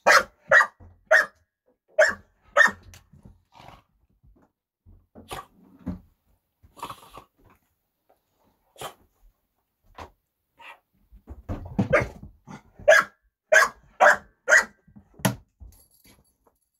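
Pit bulls barking in short, sharp bursts: a quick run of five at the start, a few scattered barks, a rougher, lower stretch about twelve seconds in, then another run of five near the end. It is a squabble among the dogs over a piece of bread.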